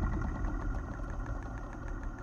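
Low, steady rumbling drone from a movie trailer's title-card sound design, with a fine crackling flicker over it, slowly fading.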